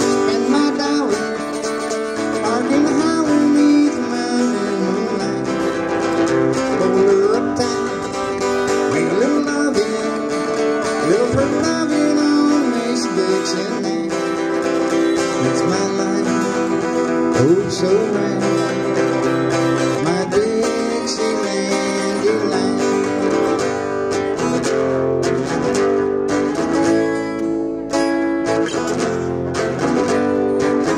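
Acoustic-electric guitar strummed in a country tune, with sustained melody notes bending in pitch over it, played on a harmonica in a neck rack: an instrumental break with no singing.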